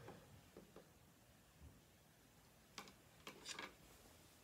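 Near silence: faint room tone with a few soft taps and clicks in the second half, from a felt-tip marker and a spiral notebook being handled.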